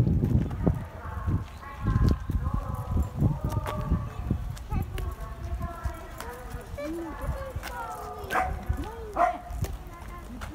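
People's voices talking and calling in short phrases outdoors, with a low rumble around the start.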